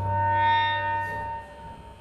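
An electric guitar tone through effects, sustained and ringing, swells up and fades away over about a second and a half, over a low hum that fades with it.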